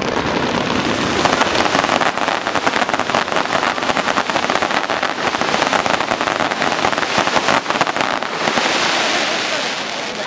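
Fireworks display: a dense barrage of rapid pops and bangs from many shells and comets going off together for about eight seconds, then thinning out and fading near the end.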